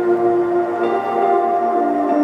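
Soft ambient instrumental music of long held synthesizer-pad chords, moving to a new chord about a second in.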